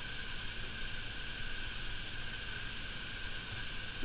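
Steady hiss of room tone and recording noise, with a faint steady high whine underneath.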